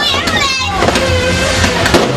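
A ground fountain firework spraying sparks with a steady hiss, mixed with a voice and background music with a steady bass line.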